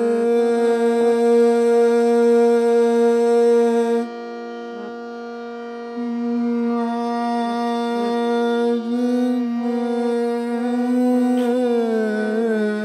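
Hindustani semi-classical dadra in raag Mishra Pilu: a male tenor voice and harmonium hold long, steady notes. About four seconds in the sound drops to a softer held tone for about two seconds, then the full sound returns, with a wavering slide in pitch near the end.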